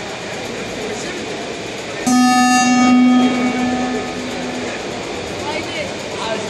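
A loud buzzer sounds about two seconds in, one steady tone held for about a second that then dies away in the hall's echo, over background crowd chatter.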